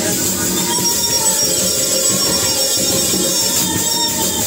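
Lively church worship music: hand drums beaten under voices singing together.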